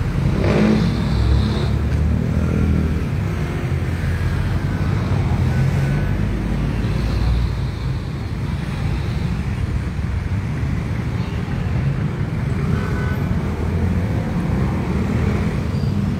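Road traffic noise: a steady low rumble of vehicles on a nearby road, with faint voices in the background.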